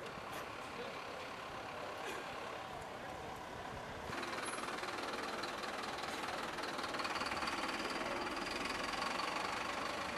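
Street ambience with a vehicle engine idling and faint voices in the background; the sound jumps abruptly louder about four seconds in.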